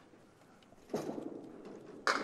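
A candlepin ball rolls down the wooden lane, then about a second in it strikes the pins: a sudden clatter of candlepins knocking together and falling, fading off, with a second loud clatter right at the end.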